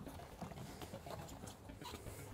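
Faint rustling and light, scattered taps of a bicycle inner tube being handled and fed through the rim's valve hole.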